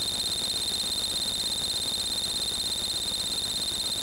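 A steady high-pitched whine that pulses rapidly and evenly, over a low hiss.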